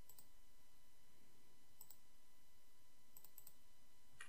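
Faint clicks of a computer mouse selecting a date in a form: one near the start, another just under two seconds in, and a quick run of three near the end.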